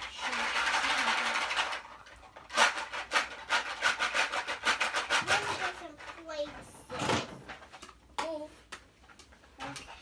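Plastic toy kitchen pieces clattering and rustling as children play, with a child's voice in between. A burst of rustling comes first, then a run of quick clicks and clatter, and one sharp knock about seven seconds in.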